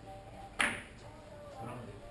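A single sharp, loud click of Russian-pyramid billiard balls striking, about half a second in, ringing briefly, over a faint murmur of voices.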